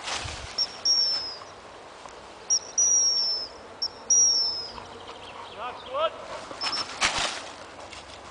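A gun dog whistle sounding three long, clear high blasts, each dipping slightly in pitch, over the first five seconds, then one short pip later on. A man's shout comes about six seconds in, and a short burst of noise follows near the end.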